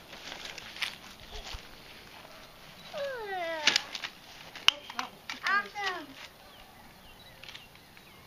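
Short, high-pitched wordless vocal calls: one long call sliding down in pitch about three seconds in, then a few short rising-and-falling calls a couple of seconds later. A sharp click falls between them.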